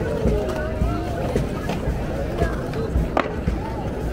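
Skateboard wheels rolling over stone paving, with sharp clacks from the boards, the loudest about three seconds in, over a crowd's voices.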